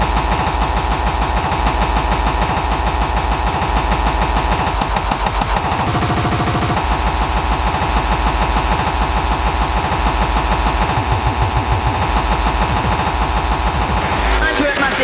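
Breakcore played loud through a club sound system: very fast, dense chopped drum breaks over heavy bass and a steady mid-pitched drone. About six seconds in the texture changes for a second, the drone shifting lower and the bass dropping out, before the full pattern returns.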